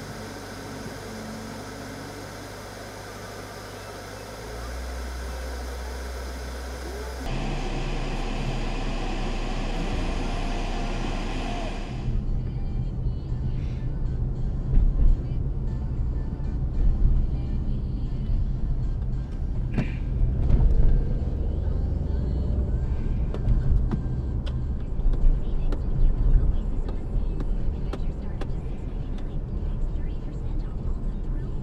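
Road noise and engine rumble heard inside a moving car's cabin, uneven with bumps and road surface, while a car radio plays underneath. The sound changes abruptly a few times where the recording cuts.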